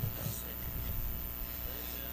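Steady low electrical hum with faint, distant voices.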